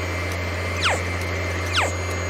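Cartoon vacuum cleaner sound effect: a steady low motor hum with a rushing hiss, and two quick falling swooshes, one about a second in and one near the end.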